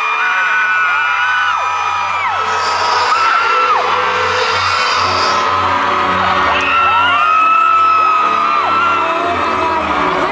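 Live concert music through big outdoor speakers, heard from inside a crowd: long held sung notes that slide up and down over a steady bass beat, with people in the crowd whooping.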